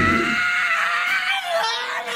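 A man laughing in one long, high-pitched, wailing squeal that drops lower about one and a half seconds in; the band's music dies away in the first half second.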